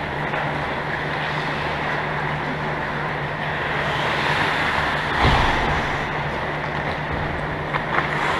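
Steady background noise of an indoor ice rink during hockey play: a constant low hum under a noise haze, with a dull low thump about five seconds in.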